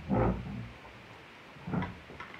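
A child blowing her nose into a tissue: two blows, the first about half a second long just after the start, the second shorter near the end.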